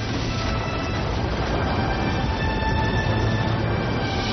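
Steady rumble of a hotel tower collapsing in an explosive demolition, with music underneath.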